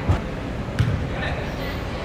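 Two dull thuds of a soccer ball being kicked on artificial turf, one at the start and one just under a second in, over players' voices.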